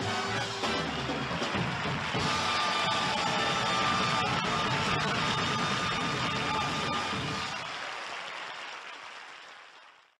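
A live band playing the closing bars of a medley, with a held high note over a busy bass line, then fading out over the last two or three seconds to silence.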